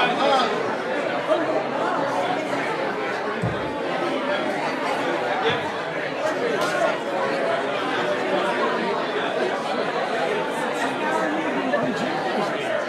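Many people talking at once: the overlapping chatter of a small congregation greeting one another.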